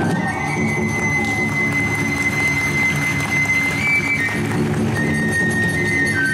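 Live kagura hayashi accompaniment: a transverse bamboo flute holds one long high note over steady, driving taiko drumming. Near the end the flute steps up once and then falls away in short steps.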